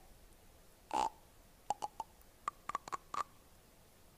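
A short breathy vocal sound, then a quick run of about ten tongue clicks and mouth pops, several with a hollow pitched ring.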